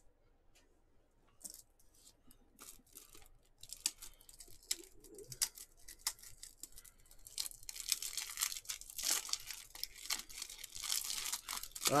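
Plastic or foil wrapping being handled and torn open, likely a trading card pack: a few scattered clicks and rustles at first, building to steady crinkling and tearing over the last few seconds.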